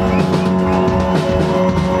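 A band playing loudly: a drum kit over sustained held chords, with a chord change about one and a half seconds in.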